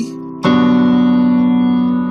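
Yamaha digital keyboard playing a piano chord, struck about half a second in and held, fading slowly.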